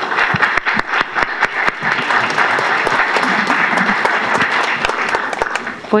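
Audience applauding: many hands clapping in a dense, steady patter that starts right away and dies down near the end.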